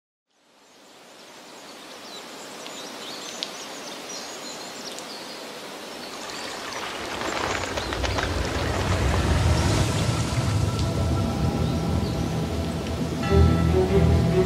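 Nature ambience fading in from silence: a steady rush of water with a few high chirps. From about halfway a deep rumble swells, and near the end music with held notes comes in.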